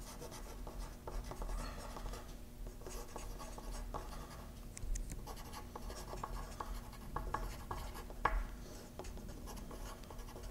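Two wooden pencils writing on paper, a soft, irregular scratching of pencil strokes, with one sharper tap about eight seconds in.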